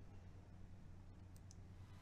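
Near silence: a faint steady low hum, with two faint short clicks about a second and a half in.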